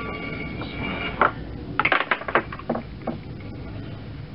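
Handling sounds at a potter's wheel as a freshly thrown clay mug is freed and lifted off the wheel head. A steady high whine lasts about the first second, then comes a quick run of sharp clicks and knocks around the middle.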